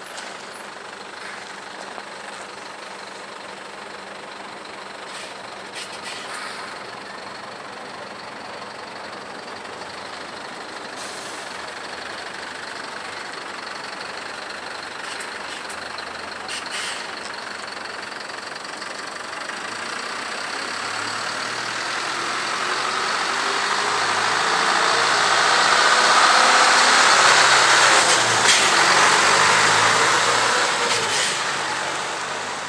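Engine of a utility clearing truck running as it slowly approaches and passes close by. It grows steadily louder through the second half and is loudest a few seconds before the end.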